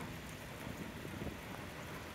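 Faint, steady outdoor background noise with a light patter of rain.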